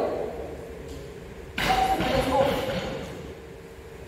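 A sudden knock about one and a half seconds in, as a cricket ball is struck against wooden stumps to put down the wicket in a run-out of the non-striker. It echoes briefly in a large hall, with voices over the tail.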